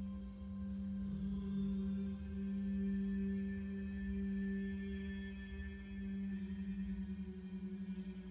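Background meditation music: a sustained ringing drone with a strong steady low tone and fainter higher overtones, wavering in a slow pulse in its last couple of seconds.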